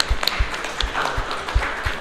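A small group clapping and applauding after a short thank-you, with scattered sharp claps and a few low thumps underneath.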